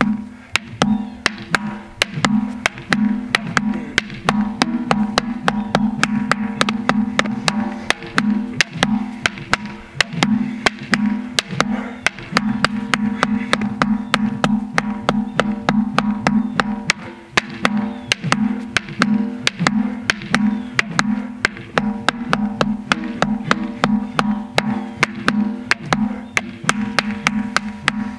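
Rattan sticks striking a stack of rubber tyres in rapid, continuous double-stick strikes, several hits a second, over background music with a steady pulsing low tone.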